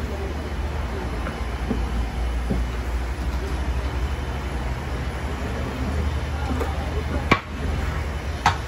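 A steady low rumble, with a single sharp metal knock about seven seconds in as the steel ladle comes down into the big cooking cauldron.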